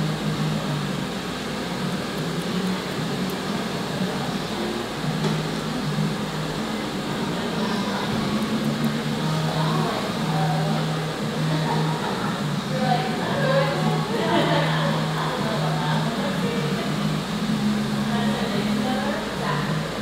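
Background music with a low bass line stepping between two notes, under indistinct voices and a steady room hum.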